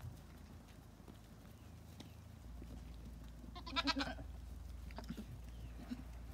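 A goat bleating once, a short wavering call about two-thirds of the way in, followed by a fainter call about a second later.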